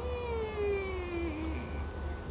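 A woman's voice holding one long, slowly falling wordless note, like a drawn-out thinking "uhh", lasting about a second and a half and trailing off, over a faint steady low hum.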